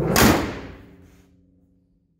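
Steel hood of a 1954 GMC pickup slammed shut: one loud bang that rings out and dies away over about a second.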